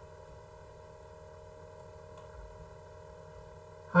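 Low, steady background hum made of several constant tones, the recording's own electrical noise, with nothing else sounding.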